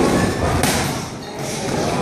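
Gloved punches landing during muay thai sparring: a blow right at the start and another about two-thirds of a second in, over the background noise of a busy gym.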